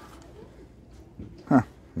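Low, steady background hum, then a short spoken 'huh' about one and a half seconds in.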